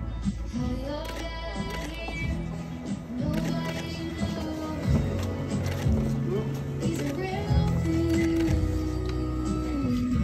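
Slow music with long held notes and chords.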